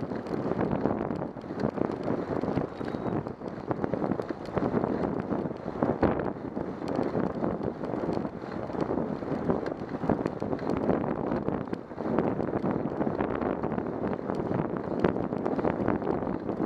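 Wind buffeting the microphone of a camera mounted on a moving bicycle, a continuous rushing that swells and dips, with small rattling clicks throughout.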